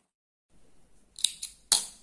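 Small scissors snipping thread: three sharp snips in quick succession about a second in, the last the loudest.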